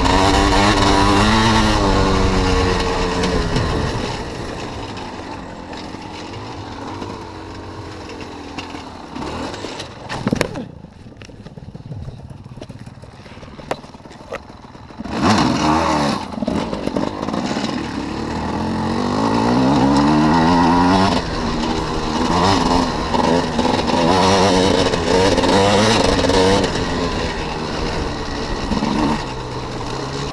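Enduro motorcycle engine heard from on board while racing, revving up and down through the gears. Around four seconds in it eases off and stays quieter and lower. At about fifteen seconds it pulls hard again in repeated rising revs.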